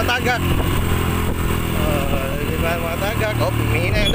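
Motorcycle engine running steadily at low speed, a low even hum, with people's voices over it in places.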